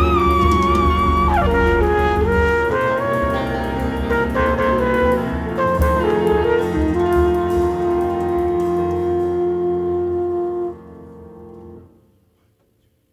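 Live jazz quartet: a trumpet leads over piano, double bass and drums. The trumpet holds a wavering note, falls away in a downward smear, runs through a phrase and ends on a long held note. The band cuts off sharply about eleven seconds in, leaving only a faint ring.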